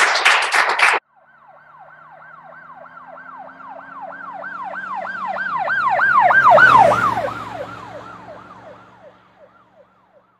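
Clapping cuts off about a second in. An emergency vehicle siren in fast yelp mode then swells closer with about four wails a second and an engine hum beneath. Near the middle it drops in pitch as it passes, then fades away.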